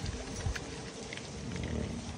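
Faint clicks and handling noise of fishing rod parts being fitted together by hand, over a low steady rumble.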